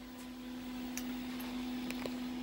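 Quiet room tone on a workbench: a steady low electrical hum with faint hiss, and a couple of faint clicks, one about a second in and one near the end.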